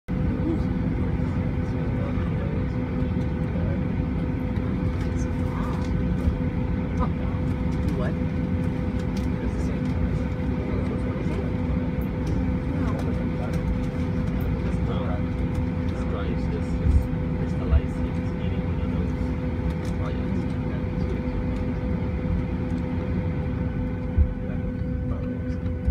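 Steady cabin noise inside a Boeing 737-900 being pushed back from the gate: an even ventilation drone with a constant hum, and indistinct passenger chatter under it. Two brief knocks come a little past the middle.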